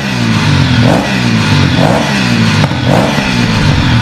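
Motorcycle engine revving over and over, the pitch rising and falling about once a second.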